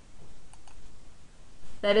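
Two faint computer mouse clicks a fifth of a second apart, about half a second in, over low steady background hiss.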